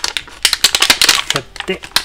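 Clear plastic blister packaging crackling and clicking in quick bursts as it is flexed and pried to free a stuck part.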